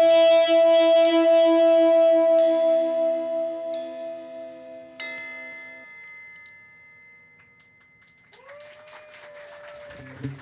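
A live band's sustained electric guitar chord rings out and fades away, with a few bright strikes over it about two and a half, four and five seconds in. After a quiet stretch, a thin tone slides up and holds near the end.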